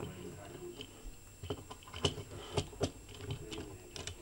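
Hard plastic parts of a small Transformers figure clicking and knocking together as it is handled, a few sharp clicks spread out and spaced apart.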